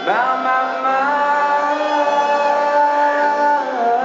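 Live rock performance: a male singer holds one long sung note over guitar accompaniment, sliding up into it at the start and dropping off near the end.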